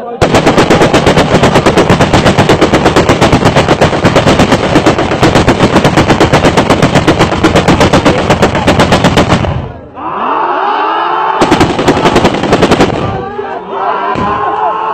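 Automatic rifle firing long bursts into the air: a steady run of rapid shots, roughly ten a second, lasting about nine seconds. After a pause with shouting, a second, shorter burst of about a second and a half follows.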